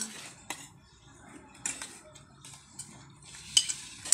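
Steel spoons and plates clinking as dishes are handled: a few scattered clinks, then a louder quick cluster near the end.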